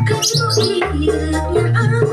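Koplo dangdut music with hand-played kendang drum strokes over a steady bass line. A short run of high gliding notes sounds in the first second.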